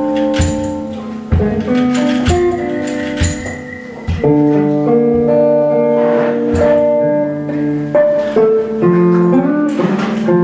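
Instrumental blues played live on a hollow-body electric guitar through a small amplifier, with sustained chords and single notes, accompanied by drum hits.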